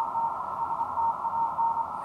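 Morse code (CW) on the 40-metre amateur band, received by an RTL-SDR through an upconverter and played as a tone of about 900 Hz keyed fast in dots and dashes. Behind it is steady receiver hiss, cut off above the narrow CW filter.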